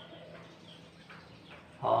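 Faint squeaks of a marker pen writing on a whiteboard, a few short strokes. A man's voice starts near the end.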